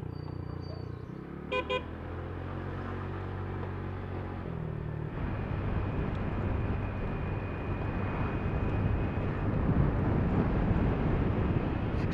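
Motor scooter engine running at an even speed, then road and wind noise building from about five seconds in as the scooter speeds up. Two short horn beeps sound about a second and a half in.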